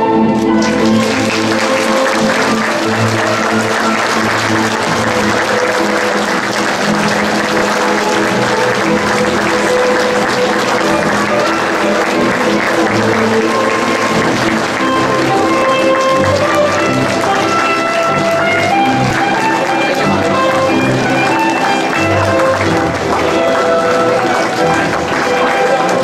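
A crowd of people clapping steadily over music with held notes; the applause starts about half a second in.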